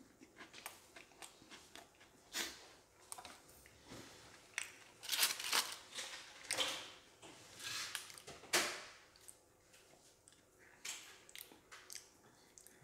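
Someone chewing a crisp wafer sandwich cookie (Trader Joe's Neapolitan Joe-Joe's) close to the microphone: a string of irregular crunches, loudest a little past the middle.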